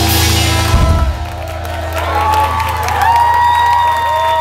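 A live rock band ending a song: cymbals wash, then stop with a final drum hit about a second in, while a low bass note rings on under the dying chord. In the second half, whoops and cheers from the audience rise over it.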